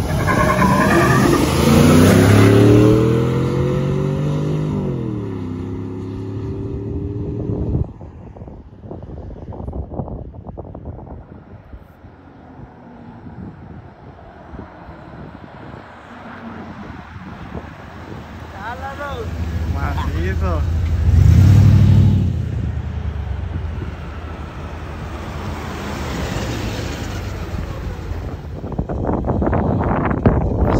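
A Chevrolet S10 pickup and a Jeep Cherokee accelerating hard from a standing start in a drag race. Their engines rise in pitch, drop once at an upshift about four to five seconds in, then fade into the distance. Later, vehicles come back and pass close, loudest a little past halfway.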